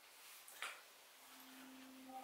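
Near silence: room tone, with one brief soft rush about half a second in and a faint steady hum starting after about a second.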